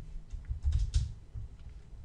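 Computer keyboard typing: a short run of key clicks with dull thuds in the first second, then a quieter pause.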